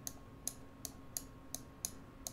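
Light, sharp clicks from computer input, about three a second and slightly uneven.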